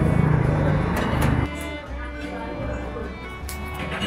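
Broth poured from a small bowl into a bowl of fish-ball noodles, a louder splashing stretch that stops about a second and a half in, over background music with steady held notes.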